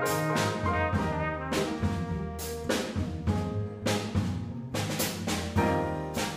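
A live jazz combo playing: trumpet out front over acoustic piano, upright bass, drum kit and guitar, with repeated cymbal and drum strokes through the passage.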